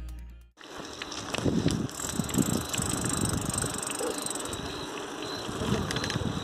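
Bicycle rolling fast over a paving-brick path, rattling and clicking over the bumps, with a thin steady high tone above. Background music dies away in the first half second.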